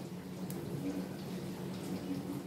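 Quiet, steady low hum of a small room, with a single faint click about half a second in.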